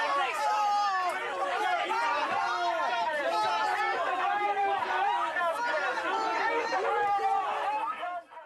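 Many voices shouting and talking over one another: a crowd of jeering protesters in a jostling scrum.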